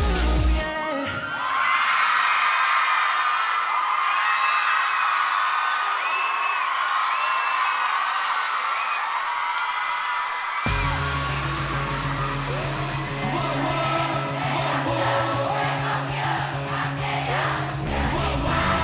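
A K-pop track with a heavy bass beat cuts off about a second in. Audience screaming and cheering follows, with no bass under it. About ten seconds in, a new K-pop song starts abruptly with a heavy bass beat.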